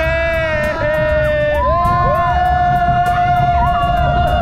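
Roller coaster riders screaming and yelling together, long held, wavering cries, over a low rumble from the moving ride and wind on the microphone.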